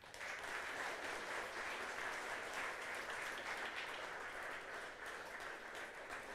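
Seminar audience applauding at the end of a talk, many hands clapping steadily and fading a little toward the end.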